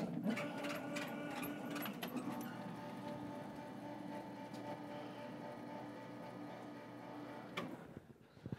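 A small motor whirring at a steady pitch, with a run of clicks in its first two seconds, that cuts off just before the end.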